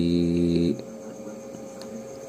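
A short, steady low buzz lasting under a second at the start, then a constant faint electrical hum.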